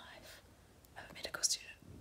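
Faint whispered speech, a short breathy phrase about a second in.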